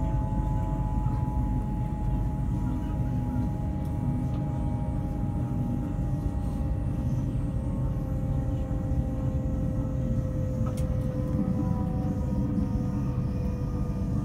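Inside an LNER Class 801 Azuma electric train: a steady low rumble of the carriage running on the track, with a whine from the traction drive slowly falling in pitch as the train slows on its approach to a stop.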